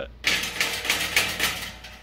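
Loose sheet-metal door panel of a CO2 laser cutter's cabinet rattling rapidly as it is shaken by hand, a sign that the panel fits sloppily in its frame.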